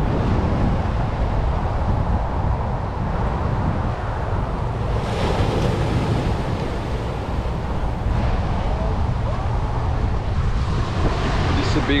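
Wind buffeting the microphone over the wash of small waves breaking on a sandy beach; the surf hiss swells for a few seconds around the middle.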